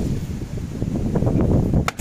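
Strong wind from a sudden dust storm buffeting the microphone: a loud, ragged low rumble that rises and falls in gusts. A single sharp click near the end.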